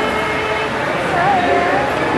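Voices singing a devotional song together, with one voice holding a wavering sung note in the second half.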